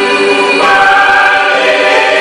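Mixed gospel choir, men's and women's voices, singing a held chord that moves to a new, higher chord about half a second in.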